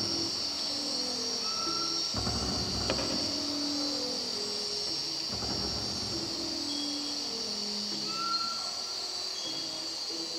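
A steady, high-pitched insect chorus of crickets under quiet instrumental music: low held notes, with soft low swells about two and five and a half seconds in.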